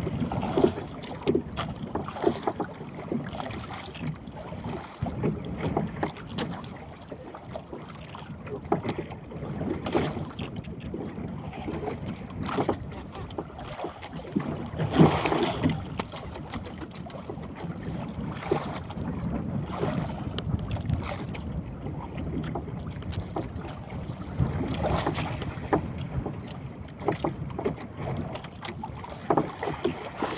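Wind buffeting the microphone over choppy sea, with water slapping against a small outrigger fishing boat's hull and frequent short knocks and clicks from the boat and the hand line being hauled in. A louder burst comes about halfway through.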